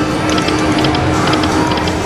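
Video slot machine in its free-games bonus: quick clusters of ticking reel-spin sound effects, about two sets a second, over the game's steady music.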